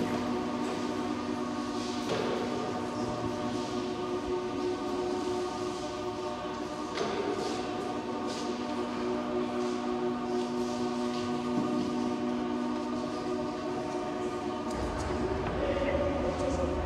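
Sustained droning chord of many steady held tones from the sound installation's music, with brief noisy accents about two seconds in and again about seven seconds in.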